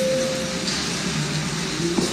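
The soundtrack of a TV advert played over a video call: a held music note that fades out under a second in, over a steady, noisy rush of ambience.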